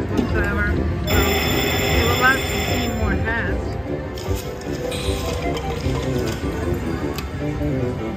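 Huff n' More Puff video slot machine playing its bonus music and reel sound effects during free spins, with a bright ringing chime from about one to three seconds in. Casino floor chatter runs underneath.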